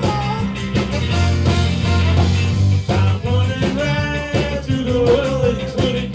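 Ska band playing live: electric guitar, bass, drums, saxophone and trombone, with sung vocals over the top.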